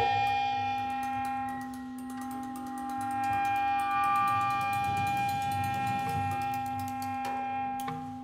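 Two clarinets holding long, steady notes together, one high and one lower, in a slow, minimal live ensemble passage. Faint, scattered clicks sound over the held tones.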